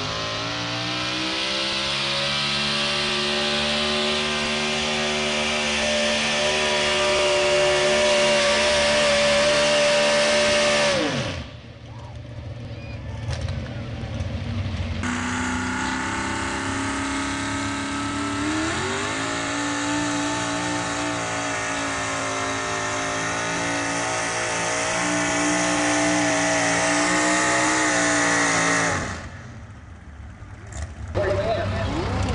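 Pickup truck engine held at high revs under heavy load while pulling a weight sled, winding down about eleven seconds in. After a cut, an engine revs up again, holds high and drops off near the end.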